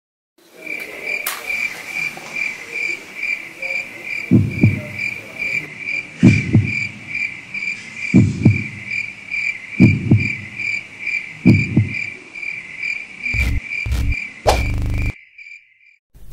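Crickets chirping in a steady high pulse, about three chirps a second, over deep double thuds that come roughly every two seconds. Near the end a cluster of heavier low hits comes, then the sound cuts off abruptly.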